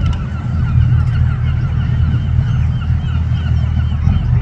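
A flock of birds calling, a rapid run of short honk-like cries, over a loud steady low rumble.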